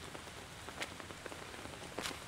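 Light rain pattering: a faint, even hiss with scattered small drip ticks.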